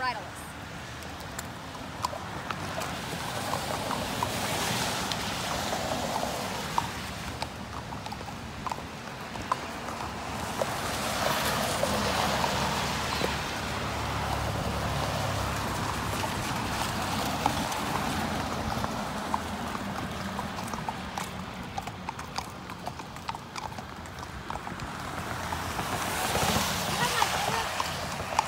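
Horses walking, their hooves clip-clopping irregularly on the street, while traffic goes by on the wet road in slow swells of tyre noise that rise and fade every several seconds.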